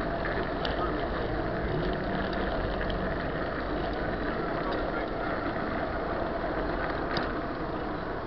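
Steady wind rush on a handlebar-mounted camera's microphone and bicycle tyre rumble on pavement while riding, with faint voices of nearby riders and a small click near the end.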